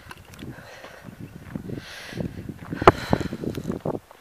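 Footsteps on a dirt farm track with rustling, with a sharp click about three seconds in.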